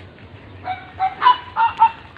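Chicken clucking: a quick run of about five short calls in the second half.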